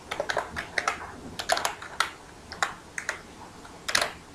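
Computer keyboard being typed on: sharp keystroke clicks at an uneven pace, some in quick runs of two or three.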